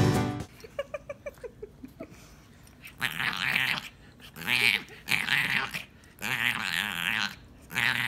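French bulldog vocalizing in a series of about five drawn-out calls with a wavering pitch, each under a second long, starting about three seconds in.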